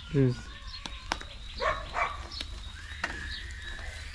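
Metal shashlik skewers clicking against the charcoal mangal a few times as they are turned, with short snatches of voice between.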